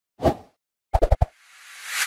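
Logo-animation sound effects: a single soft pop, then a quick run of four clicks, then a whoosh that swells toward the end.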